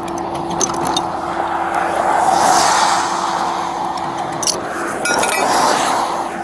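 Rollback tow truck's hydraulic winch running with a steady whine, with the winch chain and hook clinking against the steel deck. A vehicle passes on the road near the end.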